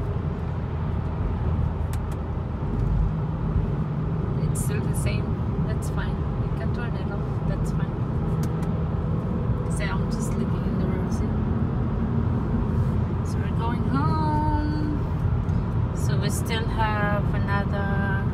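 Steady road and engine rumble inside a moving car's cabin. A person's voice is heard briefly about 14 seconds in and again near the end.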